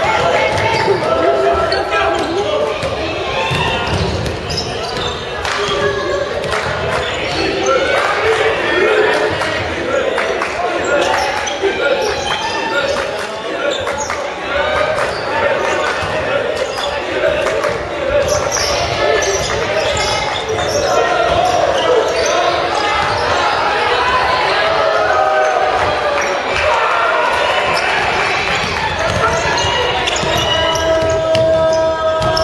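Basketball game in an echoing gymnasium: the ball bouncing on the wooden court, with voices of players and onlookers shouting and calling all through.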